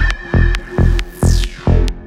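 Progressive techno at about 135 beats per minute: a steady four-on-the-floor kick drum with ticking hi-hats under a held high synth tone, and a synth sweep falling in pitch about halfway through.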